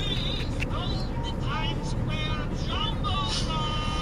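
Steady low rumble of a car's engine and road noise heard inside the cabin while creeping along in highway traffic, with faint voices over it.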